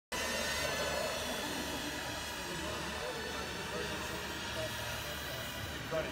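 Steady high-pitched whine of small electric radio-controlled aircraft motors and propellers in flight, several tones held at once.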